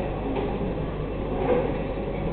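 A steady low hum with even background room noise; nothing stands out.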